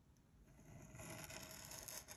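Faint scratching of a dip pen's metal nib drawn across brown card in one long inked stroke, setting in about half a second in and holding steady.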